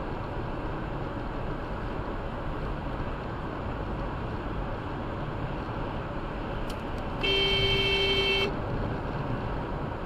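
Steady road and engine noise from inside a moving vehicle, broken about seven seconds in by one steady car-horn honk lasting just over a second. It is a warning honk as a car merges in close alongside on the right.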